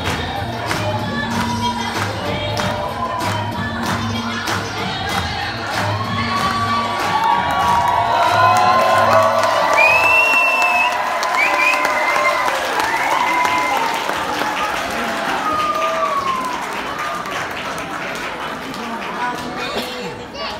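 Group singing over music with a steady beat, which stops about halfway through; the audience then cheers, shouts and applauds.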